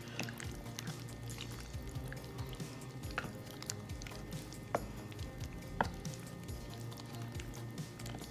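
Wooden spoon stirring a thick mash of avocado and shrimp in a glass bowl, soft squishing with a few sharp clicks where the spoon knocks the glass.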